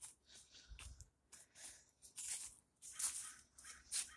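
Footsteps on fallen leaves and grass, a quiet rustle with each step, several steps a little under a second apart.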